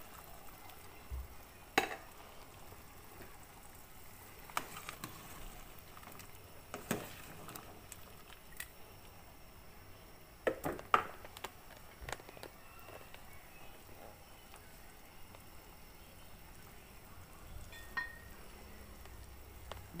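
Chicken-feet soup at a rolling boil in an aluminium pot, bubbling steadily. A few sharp knocks stand out over it, the loudest about eleven seconds in.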